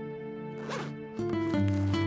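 A school backpack's zipper pulled once, a short rasp about half a second in, over soft background music that grows louder with new notes just past the middle.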